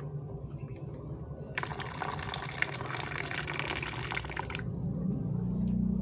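Water poured from a plastic container through a small mesh strainer into a basin of water: a splashing pour of about three seconds that starts a second and a half in and stops suddenly. A low hum rises near the end.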